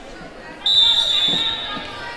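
Volleyball referee's whistle: one long, steady, high-pitched blast starting about half a second in, ringing in a gymnasium. A couple of dull low thuds sound under it.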